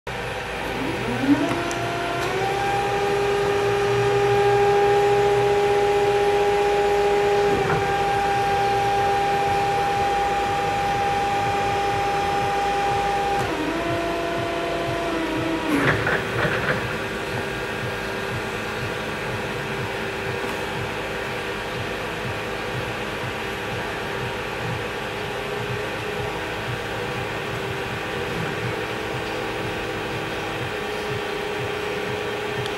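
Carer Z65H electric forklift's hydraulic pump motor whining as the mast is raised: the whine rises in pitch over the first two seconds, then holds steady, shifting pitch near 8 and 13 seconds. About 16 seconds in, a few clanks come from the mast at full height, followed by a fainter steady hum while the mast is lowered.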